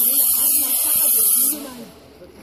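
A loud hiss, like air or spray escaping under pressure, that lasts about a second and a half and then cuts off, with faint voices beneath.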